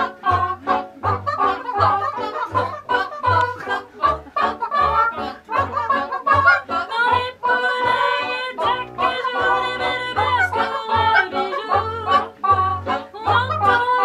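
A group of women singing a cappella, several voices in harmony over a low, steady beat about twice a second.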